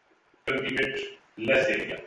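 A man speaking two short phrases, the first about half a second in and the second near the end, with a short pause between.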